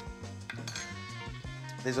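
A few light clinks of a metal utensil against a cooking pot, over soft background music with sustained tones.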